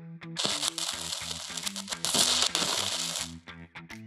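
Short logo intro sting: a run of brief, changing low music notes under a bright hissing sound effect, which cuts off abruptly a little past three seconds in.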